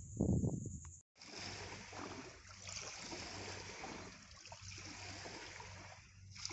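Small waves lapping and trickling against shoreline rocks, a steady gentle wash that starts about a second in.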